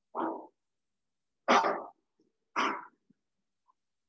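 A person coughing three times in short, loud bursts, the second and third sharper than the first.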